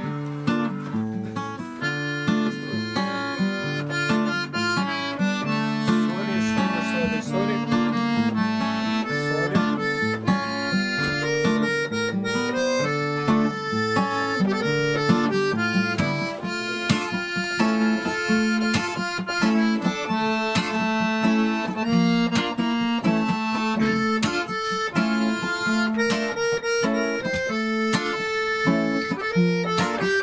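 Acoustic guitar strummed in D minor, with a second instrument holding long, sustained melody notes over it, in an instrumental introduction.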